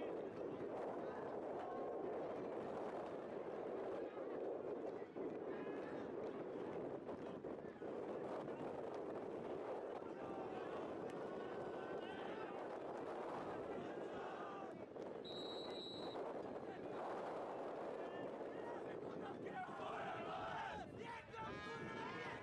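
Ambient sound from a lacrosse field during a stoppage: a steady murmur of many distant voices from players, benches and spectators. About fifteen seconds in there is a short, high whistle blast, and voices shout louder near the end.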